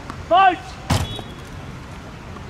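One short, loud shout, then a single sharp tennis-ball impact about half a second later.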